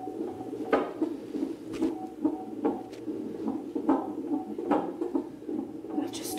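Fetal heart monitor's Doppler speaker playing fetal heartbeats picked up by the transducers on the belly, a continuous pulsing whoosh, with a few short knocks from handling of the transducers.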